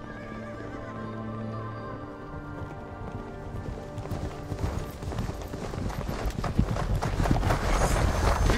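Galloping horses' hooves on sand over film-score music. The music's held tones carry the first half, and the hoofbeats come in about halfway and grow steadily louder as the riders approach.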